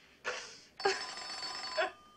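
A telephone bell ringing: a short burst, then a ring of about a second that cuts off sharply.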